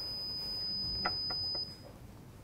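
A single steady, high-pitched electronic beep from a security system's keypad buzzer, lasting until it cuts off near the end: the alarm tone for a wrong password entry. A couple of faint ticks fall about a second in.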